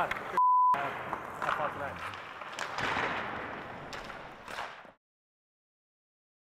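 A single steady censor bleep, about a third of a second long, replaces a spoken word about half a second in. Voices and rink noise with a few sharp knocks follow, then fade out to silence about five seconds in.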